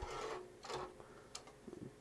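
Drive tray being worked into a bay of a Netgear ReadyNAS RN104: a faint scrape, then small clicks, one sharper about a second and a half in.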